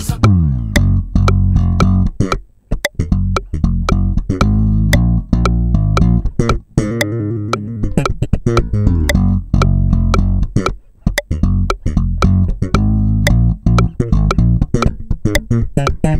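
Electric bass guitar played solo in slap style: thumb slaps and popped strings with many muted ghost-note clicks. The funk groove leaves short gaps of silence between its phrases.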